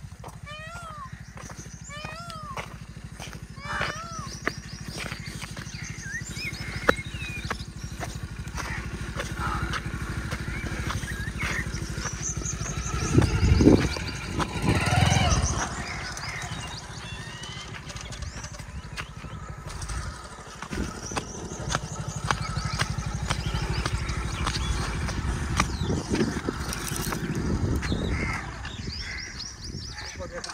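A motorcycle engine running steadily. Birds call repeatedly in the first few seconds, voices come and go, and it grows louder for a few seconds around the middle.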